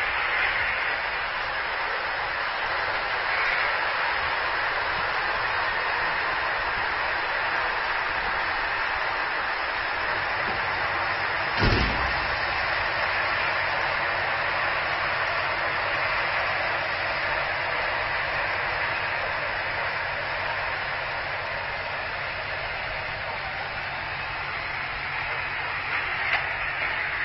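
Steady rushing, whirring noise of a greyhound track's mechanical lure running along its rail, with one short knock about halfway through.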